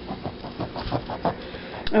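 Kitchen knife cutting into the thick peel of an ugli fruit: a run of short, irregular clicks as the blade works through the rind.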